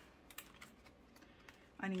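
Faint clicks and rustles of plastic cash-envelope pages being flipped in a ring binder, sharpest in the first half second.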